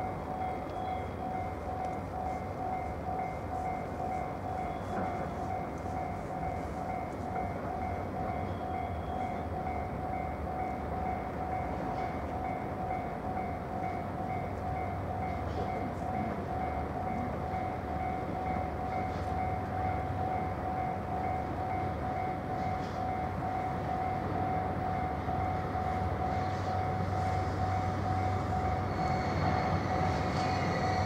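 A DD51 diesel-hydraulic locomotive hauling loaded tank wagons rumbles in at low speed, its engine drone growing louder as it draws near. A steady, rapidly pulsing ringing tone runs over it throughout.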